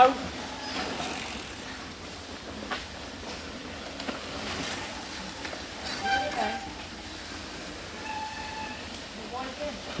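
Faint outdoor background with distant voices calling out, once past the middle and once in a held call near the end.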